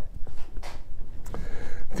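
Quiet rustling and handling noises in a pause between speech, with a brief hiss about half a second in.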